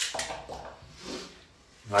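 A knife cutting through a crisp celery stalk held in the hand, a few sharp crunchy cuts near the start, with the pieces dropping into a pot.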